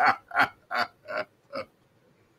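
A man's hearty laughter tailing off: five short breathy gasps about two and a half a second, each fainter than the last, then silence.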